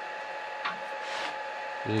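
A steady high-pitched electrical whine from workshop machinery, with a short click and a brief rustle a little past a second in.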